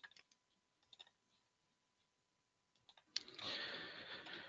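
Computer mouse clicking a few times, faint and short. A sharper click just after three seconds is followed by a soft rustling noise that carries on to the end.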